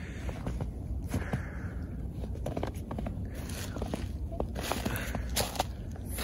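Footsteps crunching in snow, a run of irregular steps as people climb a slippery slope.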